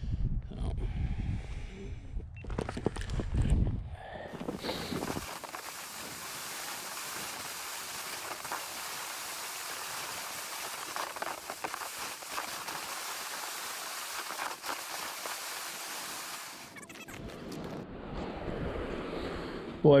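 Gear sled towed across snow-covered ice: a steady hiss of its hull sliding over the snow, with a few faint bumps. Before it, for about the first four seconds, there are knocks and rustling of gear being handled and packed.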